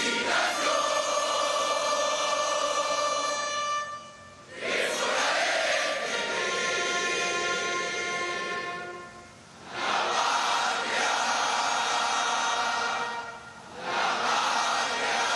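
A large group of cadets singing in unison in long held phrases, pausing briefly about four seconds in, near ten seconds and near the end, as part of military honours to a standard.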